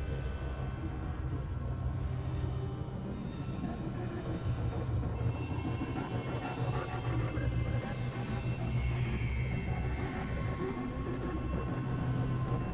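Layered experimental electronic drone music: a steady low drone under a dense, noisy, grinding texture with steady high tones. Twice, high whistling tones slide slowly downward, the first about two seconds in and the second about eight seconds in.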